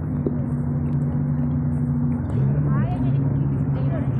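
A vehicle engine running steadily, a low hum that steps to a different pitch a couple of times.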